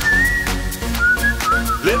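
Electronic club dance track: a whistled melody in two short phrases rides over a steady beat of kick drum and hi-hat.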